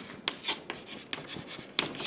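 Chalk writing on a chalkboard: a run of short, irregular scratches and taps as a word is written, with a slightly louder stroke near the end.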